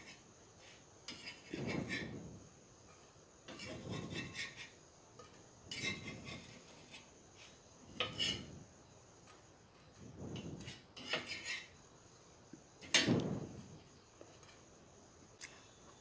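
Metal spatula scraping toasted bread rounds off a tawa and setting them onto a steel plate, about six short scrapes a couple of seconds apart.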